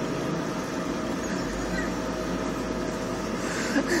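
Salon hood hair dryer running with a steady whir and a constant hum, loud enough that the person under the hood can't hear speech. A low rumble swells about a second and a half in.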